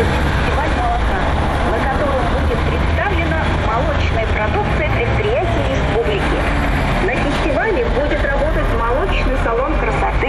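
Street traffic from a convoy of vans and cars driving past, a constant low engine and road rumble, with indistinct voices mixed in over it.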